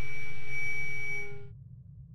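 A steady electronic tone made of several pitches at once, holding for about a second and a half, then fading out quickly.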